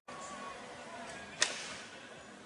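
A single sharp knock or bang about two-thirds of the way through, over steady faint outdoor background noise.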